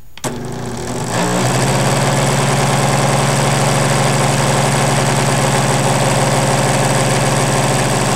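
A click as the charger clamp goes on, then a small 14-volt cordless-drill motor starts and spins up over about a second and a half. It then runs steadily with a loud, even whine, driving a Buhler printer motor as a generator that lights a 150-watt bulb.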